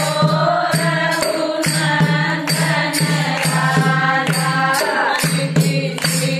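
A group of women singing a traditional Kumaoni Holi song together in a chant-like style, over a steady percussive beat of about two to three strokes a second.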